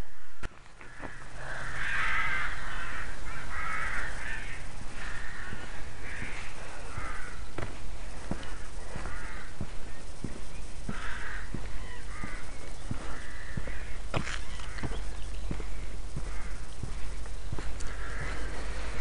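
Crows cawing in repeated bursts, over steady footsteps on grass and a low rumble on the microphone.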